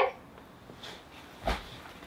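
A packed Logan and Lenora Weekender tote bag set down on a bed, landing with a single low thump about a second and a half in, after a faint rustle of its fabric.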